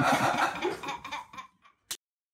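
Giggling and laughter, trailing off about a second and a half in, with a short click near the end.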